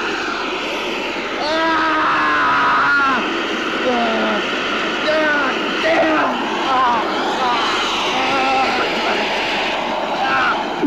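A man crying out in drawn-out, wordless cries over a steady rushing hiss. The cries are strongest and longest between about one and a half and three seconds in, then come in shorter bursts.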